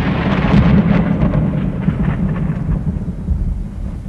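Deep rumble of an explosion in a film soundtrack, with scattered crackling, slowly dying away.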